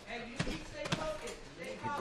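Two sharp thuds about half a second apart, from MMA fighters grappling against the chain-link cage fence on the mat. Faint shouting voices carry on around them.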